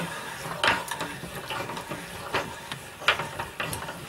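Meat grinder mincing tomato pieces: continuous mechanical grinding with three sharper clicks along the way.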